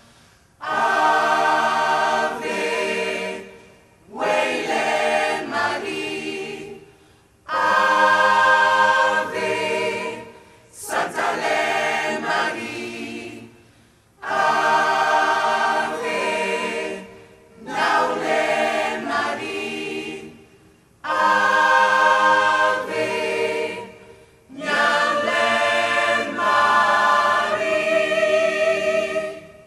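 Large gospel choir of mixed voices singing in repeated phrases of about three seconds, each followed by a brief pause.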